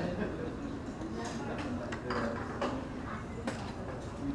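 Background murmur of voices in a restaurant, with a few light clinks of metal serving spoons against stainless steel buffet pans.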